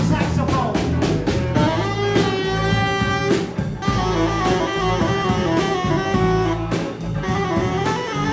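Live band music: a tenor saxophone plays a melody over a drum kit and a steady bass line.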